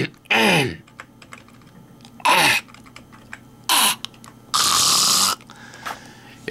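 A man coughing: three short coughs, each with a falling voiced edge, then a longer breathy cough or exhale about five seconds in. Faint light clicks sound between the coughs.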